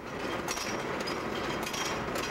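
Amusement-park ride cars rattling round their track: a steady clattering noise full of quick sharp clicks, starting suddenly.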